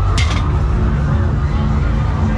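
A mallet striking the base of a high-striker strength game, heard as one short, sharp, hissy burst just after the start. It sits over steady fairground music with a heavy bass and crowd babble.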